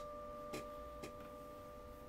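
A steady, high sustained tone with a fainter tone an octave above it, a suspense drone in a horror film's soundtrack, with two soft clicks about half a second apart.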